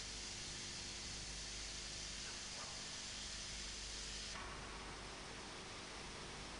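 Faint steady hiss with a low, even hum under it. The hiss thins slightly about four and a half seconds in.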